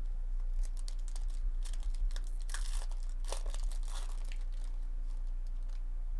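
Plastic-foil trading card pack wrapper being torn open along its crimped top and crinkled in the hands, a dense crackle for about four seconds that thins out near the end.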